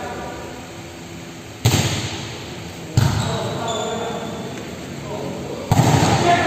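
A volleyball struck three times by players' hands during a rally, each a sharp smack that rings on in the echo of a large hall. The first two hits come about a second and a half apart; the third, a spike at the net, comes near the end.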